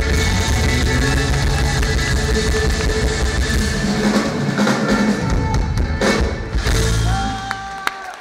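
Live folk-rock band playing an up-tempo Irish tune with fiddle, acoustic guitar and drum kit. Near the end the band drops away, leaving a single held note.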